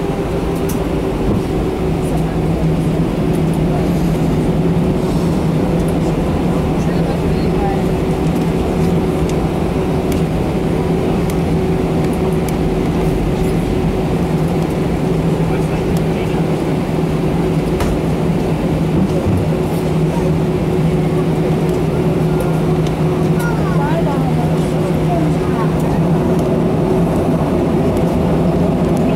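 Airbus A319 jet engines at low taxi thrust heard from inside the cabin: a steady drone with a constant low hum over rumble.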